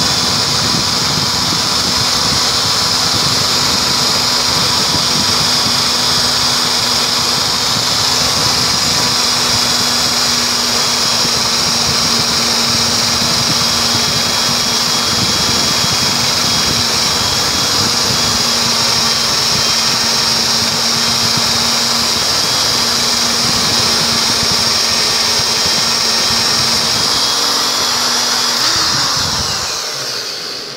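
Electric drill running steadily at speed, spinning a screw and nylon-insert lock nut while a flat file is held against the nut to grind it into a cone: a constant motor whine with the file scraping on the metal. The motor slows near the end.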